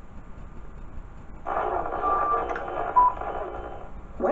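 VHS tape playback: low hum and faint tape hiss, then about a second and a half in a band of static-like hiss starts, with a short beep in the middle and a shorter, louder blip about a second later.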